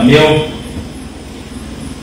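A man speaking into a microphone stops about half a second in, leaving a pause filled with steady low background noise from the hall's sound system.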